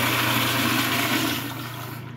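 Zurn flushometer toilet flushing: a steady rush of water through the bowl that tapers off in the last half second.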